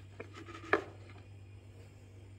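A wire whisk tapping once, sharply, against a plastic mixing bowl of beaten eggs about three-quarters of a second in, with a fainter tap just before, over a low steady hum.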